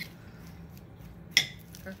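A utensil tossing chopped salad in a ceramic bowl, with one sharp ringing clink of the utensil against the bowl about one and a half seconds in.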